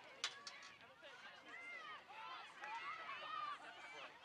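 Faint, overlapping shouts and calls of players and people around a soccer field, with one sharp knock about a quarter second in.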